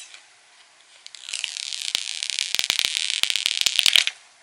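Clear plastic protective film being peeled off a phone, a crackling hiss full of small sharp clicks that starts about a second in and grows louder toward the end.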